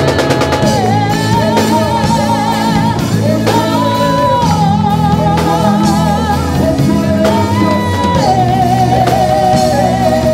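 Live gospel worship singing: a group of singers on microphones holding long notes with vibrato over guitar and band accompaniment.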